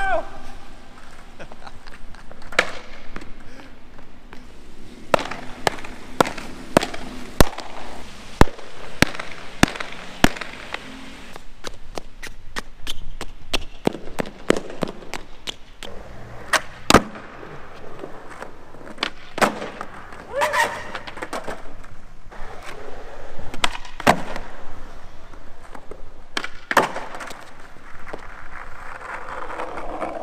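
Skateboard on 52 mm wheels rolling over smooth concrete, broken by dozens of sharp, irregular clacks as the tail pops and the board and wheels slap down on landings of flip tricks.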